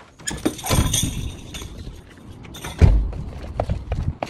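A door being pushed open to the outside: handle and latch clicks and a rush of outdoor air noise, then a heavy low thump about three seconds in.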